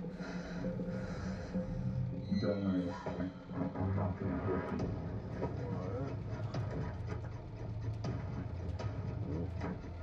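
Film soundtrack playing: background music over a low steady drone, with a voice heard from about two to six seconds in.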